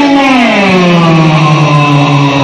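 A man's voice holding one long note that slides down in pitch and then levels off.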